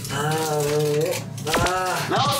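A person's long, drawn-out vocal exclamation lasting about a second, followed about one and a half seconds in by a short, sharply rising swoop.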